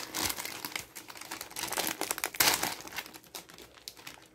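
Foil-lined snack-noodle bag crinkling as it is handled and cut open with scissors: irregular crackles, with a louder rustle about two and a half seconds in.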